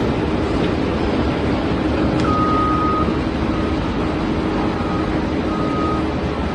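Excavator's diesel engine running steadily, with a high-pitched beep coming and going over it.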